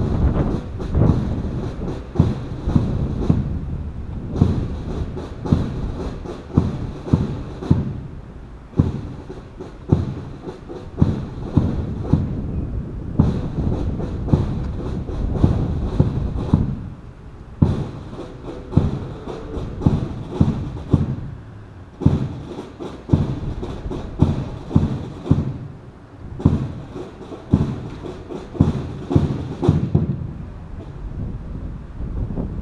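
A run of dull thumps, about two a second, in bursts of a few seconds broken by short pauses, over low rumble like wind on the microphone.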